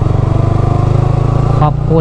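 Sport motorcycle's engine running steadily under way, heard from a camera on the bike, with a dense low engine note pulsing evenly.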